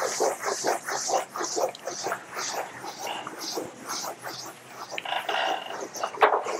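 Chalkboard eraser wiping chalk off a blackboard in quick back-and-forth strokes, a rhythmic rubbing about twice a second.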